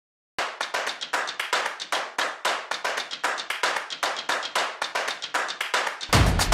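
Fast, even run of sharp claps, about seven a second, starting after a brief silence; full music with a bass line comes in at the very end.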